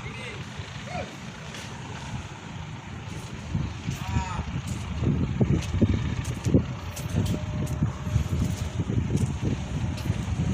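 Low steady rumble of the ship on open water. From about three and a half seconds in, louder irregular wind buffeting on the microphone takes over.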